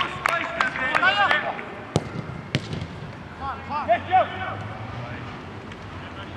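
Players shouting to each other across an outdoor football pitch, with a few sharp thuds of the football being kicked, the clearest about two and two and a half seconds in.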